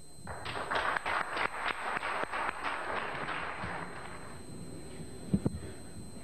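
Audience applauding, a dense patter of claps that dies away over about four seconds, followed by a couple of brief knocks about five seconds in.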